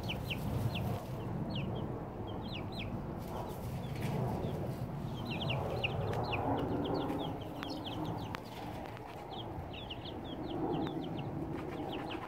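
Young chicks peeping: many short, high, falling peeps in clusters, over a low steady background rumble.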